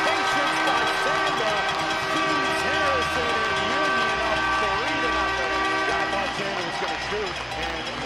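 Arena goal horn sounding a steady chord of several tones, signalling a goal, cutting off about six seconds in, over a crowd cheering and shouting.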